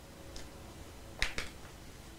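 A few short, sharp clicks over a low steady room hum, the loudest a pair about a second and a quarter in.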